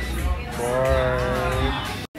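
Background music with a heavy bass, over which a voice holds one long, slightly wavering note for about a second, starting about half a second in.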